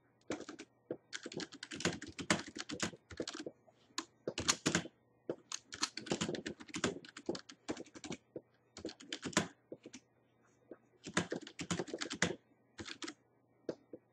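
Typing on a computer keyboard: runs of quick keystrokes broken by short pauses, as a sentence is typed out word by word.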